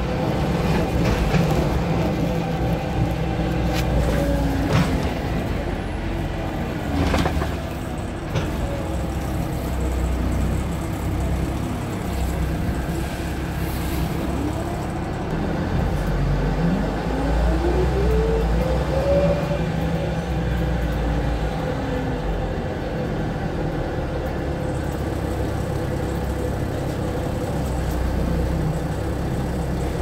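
Wright-bodied Volvo single-deck bus heard from inside the passenger saloon while driving: a steady low engine and road drone with scattered knocks and rattles from the fittings, where the left-side seats and floor are loose and moving. About halfway through, a whine rises in pitch over a few seconds.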